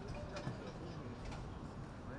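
Steady outdoor background noise with faint distant voices and a few sharp clicks: one about half a second in and two close together a little past the middle.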